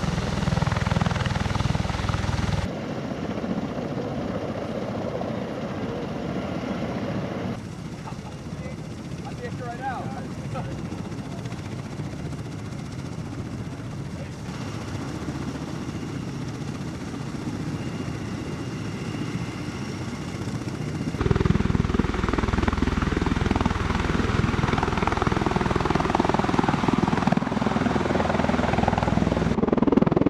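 Rotor and engine noise of an MV-22B Osprey tiltrotor, its twin turboshaft engines turning the big proprotors. The noise is steady but its level jumps up and down at several points, and it is loudest in the last third.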